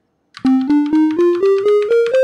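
A synthesized keyboard tone in the Ableton Learning Music web app playing an ascending C minor scale, one note about every quarter second, from about half a second in. The top C lands at the very end and rings on.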